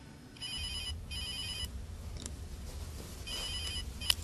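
A telephone ringing for an incoming call: two short warbling rings close together, a pause, then another ring near the end, over a low steady hum.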